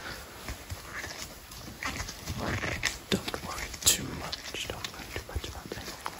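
Close, unintelligible whispering into the microphone, with scattered small clicks and a sharper click about four seconds in.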